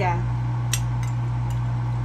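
A fork clinks once against a plate as it cuts into fried eggs, a single sharp tick under a second in, over a steady low hum.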